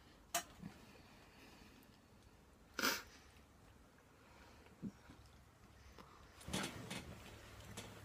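Mostly quiet, with a few short mouth sounds of a man sucking on a wad of chewing tobacco and spitting the juice into a spit cup: a click just after the start, a brief wet burst about three seconds in, and another near the end.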